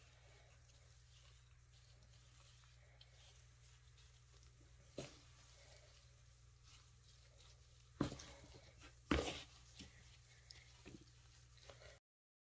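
Mostly quiet, with faint rustling of damp compost and dry leaf bedding pushed around by a gloved hand, and a few brief louder rustles about five, eight and nine seconds in.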